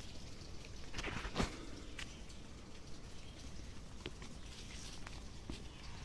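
Faint scraping and crumbling of soil as fingers work an embedded stone artifact loose from a dirt wall, with a few soft clicks of dirt and stone.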